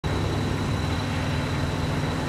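Steady low idling rumble of diesel semi-truck engines, with a faint thin high-pitched whine held over it.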